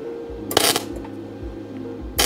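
CONENTOOL MIG-200 flux-core MIG welder striking an arc on 1 mm sheet steel: one short burst of arc crackle, a tack weld, about half a second in, over a steady low hum.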